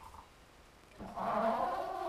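A person's long, drawn-out admiring exclamation begins about a second in, after a near-quiet start.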